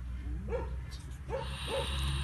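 A trapped European polecat giving three short calls, each rising and falling in pitch, over a steady low rumble.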